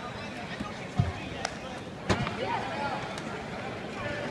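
A basketball coming off the rim and bouncing on a hardwood court: a low thud about a second in and a louder one about two seconds in, with a sharper knock between them, over background voices in a large, echoing arena.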